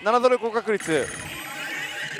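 Daito Giken Yoshimune 3 pachislot machine playing its electronic sound effects: a quick run of warbling chirps in the first second, then a softer steady tone.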